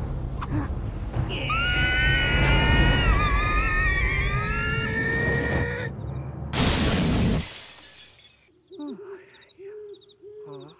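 Cartoon action sound effects: a loud, low rumble with several high wavering cries over it, ending in a short crash about six and a half seconds in, after which it turns quiet with a few soft, low tones.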